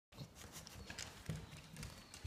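Faint, irregular soft taps, thumps and rustling from dogs shifting about and sniffing each other on a fabric-covered couch.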